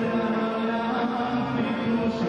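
Male singer singing live into a handheld microphone, holding long notes over band accompaniment.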